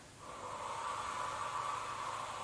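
A woman's long, steady out-breath through the mouth, starting a moment in: the controlled Pilates exhale held through the effort of the movement.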